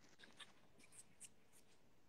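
Near silence, with a few faint, scattered small clicks and rustles.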